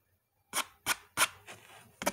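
White pencil scratching across black drawing paper: three quick strokes about a third of a second apart, the last trailing into softer scratching.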